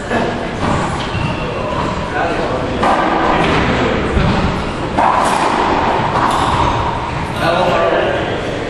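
Indistinct talking echoing in a racquetball court, with a few thuds.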